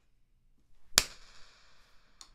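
A single sharp click about halfway through, followed by a high, thin ringing that fades over about a second.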